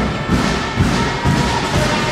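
Dull thumps several times a second, with music playing over them.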